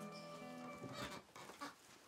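Background music of steady held notes stops a little under a second in, followed by a few short, noisy sounds.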